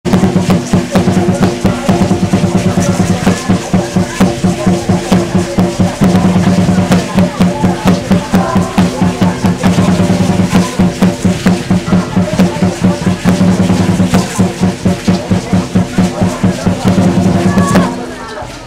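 Drum music for a dance troupe: a drum beating a fast, steady rhythm over a sustained droning tone.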